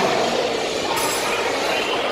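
Steady hubbub and clatter of a busy food court in a large hall, with a brief clink about a second in.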